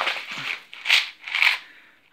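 Small plastic pot of metal paper clips being shaken: two rattles about half a second apart, after some plastic-bag rustling.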